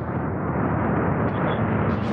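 Soyuz-FG rocket's core-stage and four strap-on booster engines at full thrust just after liftoff: a loud, steady, rumbling rush of noise, muffled with little treble.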